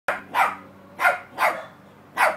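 West Highland white terrier barking: four short barks in quick succession.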